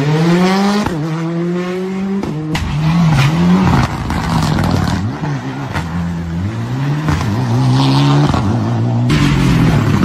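Rally car engines revving hard through a tarmac corner, their pitch climbing and dropping again and again with the throttle and gear changes as several cars pass in turn. There is a sharp crack about two and a half seconds in.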